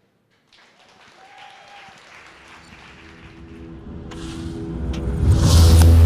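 An electronic logo sting: a swell of noise and synth tones that grows steadily louder for several seconds and lands in a loud, deep synth hit about five seconds in.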